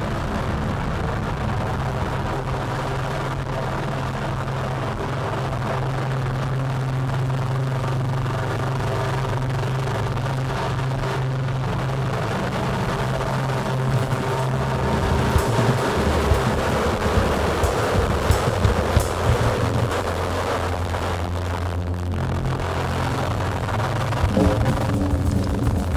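Live experimental electronic music: a dense, noisy drone from synthesizers and effects with a steady low hum that drops lower about fifteen seconds in, where sharp clicks and hits begin to cut through.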